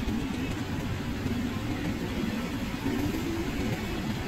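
Steady low rumble of a car in slow traffic, heard from inside the cabin: engine and road noise.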